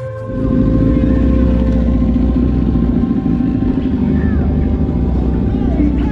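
A vehicle engine running loud and close, setting in suddenly just after the start and dropping away just after the end, over faint background music.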